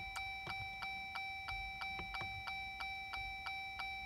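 Rapid, even electronic ticking from a Jeep Wrangler JL's dash, about five ticks a second, over a faint steady high whine.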